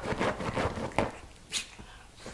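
Small dog digging and scratching at a fabric couch cushion with its paws, a rapid run of rustling strokes, with a sharper knock about a second in.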